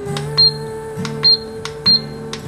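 Control buttons of an ultrasonic aroma diffuser being pressed to switch it off: three short high beeps, one per press, spaced under a second apart. Soft background music plays underneath.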